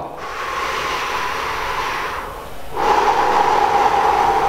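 A man breathing slowly and audibly as a paced-breathing demonstration. A long breath of about two seconds, a short pause, then another long breath of about two seconds: a deliberately slowed breath cycle, each inhalation and exhalation drawn out to counter hyperventilation.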